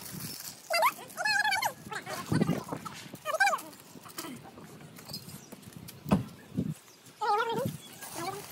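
An animal calling three times, each a short wavering cry, about a second in, after about three seconds, and near the end, with a couple of soft knocks in between.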